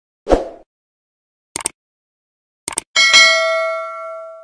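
Sound effects of a subscribe-button animation: a short thump, two quick double clicks like a mouse button, then a bright bell ding that rings on and fades over about a second and a half.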